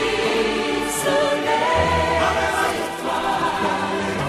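Music: a choir singing long held notes over the accompaniment.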